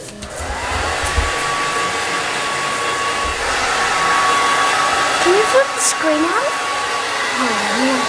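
Hair dryer running steadily: an even rush of air with a constant high motor whine.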